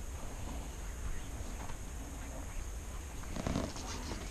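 Low, steady wind rumble on the microphone, with a short soft thump or handling noise about three and a half seconds in.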